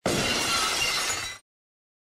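Logo sound effect: a sudden, dense noisy burst with a faint ringing to it, holding level for about a second and a half before fading out.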